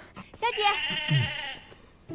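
A woman's high voice drawn out in one wavering exclamation, a line of spoken dialogue, then fading to quiet near the end.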